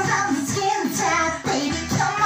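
A woman singing a pop song into a microphone over a backing track with a steady bass beat.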